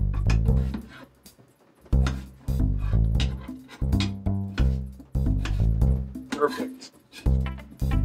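Background music led by a plucked bass and guitar, playing in short phrases with brief breaks.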